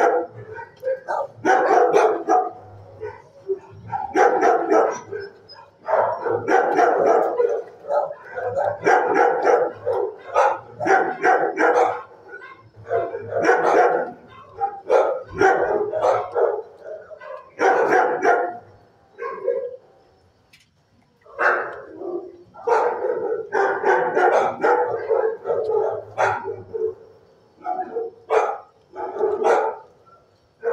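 Shelter dogs barking, a near-continuous run of barks with a short lull about twenty seconds in.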